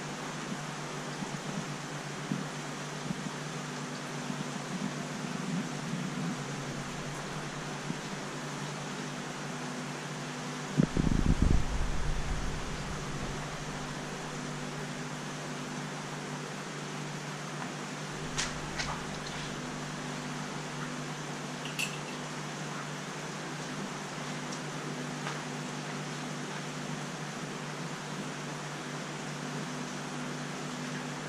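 Steady hum and hiss of aquarium pumps and circulating water, with a few low steady tones in the hum. A loud low rumbling thump comes about eleven seconds in, and a couple of faint clicks follow later.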